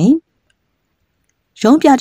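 A voice narrating in Burmese, breaking off just after the start for a pause of about a second and a half of silence before the next phrase begins near the end.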